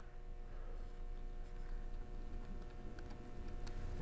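A few faint ticks and clicks from a small Phillips screwdriver turning the tiny retaining screw of an M.2 SSD inside a laptop, over a faint steady hum.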